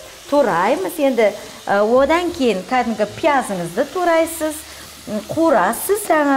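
Chicken breast pieces and onion sizzling in a frying pan while being stirred with a silicone spatula, with short faint crackles. A woman talks over it, louder than the frying.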